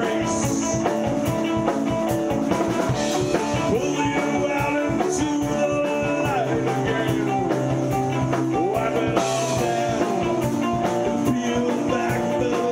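A live rock band playing: electric guitars over a drum kit and bass, with a steady beat and a few sliding notes.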